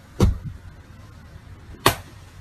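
Two sharp hand slaps about a second and a half apart: a palm smacking down onto a bare forearm.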